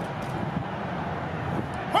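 Steady low outdoor rumble of distant city traffic, with no gunfire. A shouted drill command starts right at the end.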